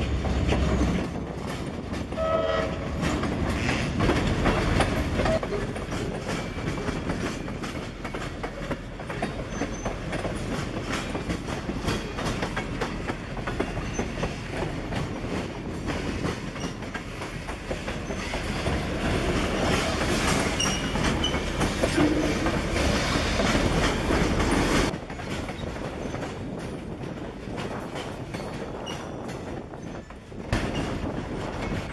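Freight train rolling slowly past close by: the cars' wheels clicking and clanking over the rail joints, with a low rumble from the diesel locomotives that swells and fades. A short steady tone sounds about two seconds in.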